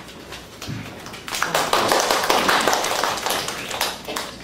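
A roomful of people applauding. The clapping starts about a second and a half in and fades near the end, marking the close of a speaker's talk.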